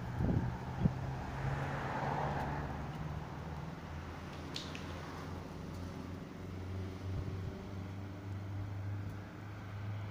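Road traffic: a steady low rumble of car engines, with a car passing by about a second or two in. Two sharp knocks come right at the start.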